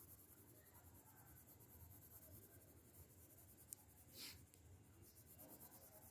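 Faint scratching of a pencil tip on paper as short detailing strokes are drawn, with a single sharp click a little past halfway.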